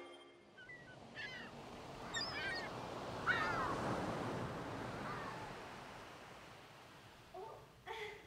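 Seaside ambience: surf washing on a beach with several gull calls in the first few seconds, the loudest about three seconds in. The surf swells through the middle and slowly fades.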